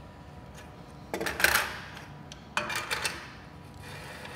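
Metal dynamics trolley handled on an aluminium track: two brief clattering, rubbing sounds, the first just over a second in and the second about two and a half seconds in, as the cart is set down and its wheels run along the track.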